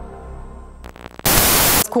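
Synth music fades out, then a loud burst of TV static hiss lasting about half a second, a VHS-style transition effect; a woman's voice begins just as it stops.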